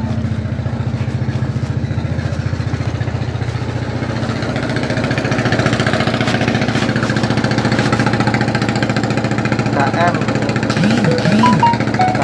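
An engine idling steadily with a fast, even beat that does not change. A few words of voice come over it near the end.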